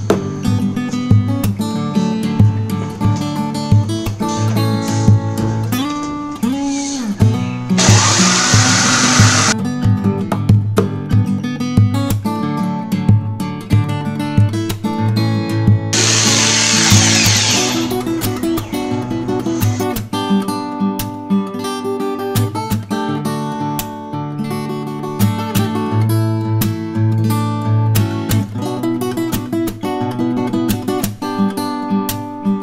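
Acoustic guitar background music throughout. Twice, about 8 seconds in and again about 16 seconds in, a jigsaw cutting through plywood is heard over the music for about two seconds each time.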